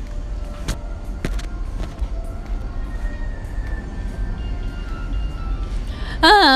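Faint background music over a steady low rumble, with a few sharp clicks about a second in.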